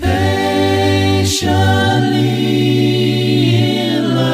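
An a cappella gospel vocal group with deep bass voices singing held close-harmony chords, with no instruments. The chord changes about halfway through, with a brief sibilant consonant just before.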